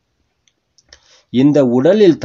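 A brief pause with a few faint, short clicks, then a man's voice resumes speaking in Tamil a little past the middle.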